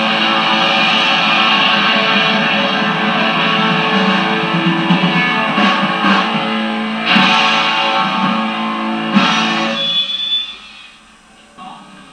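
A live band playing loud, dense music with electric guitar; the playing stops about ten seconds in, leaving only faint room sound.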